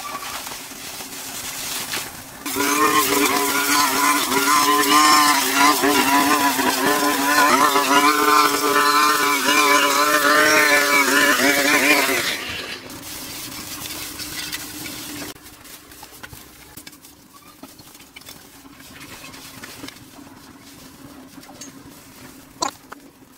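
Two-stroke brush cutter engine revving up at full throttle for about ten seconds, its pitch wavering under load as it cuts. It then drops back to idle and cuts out about fifteen seconds in.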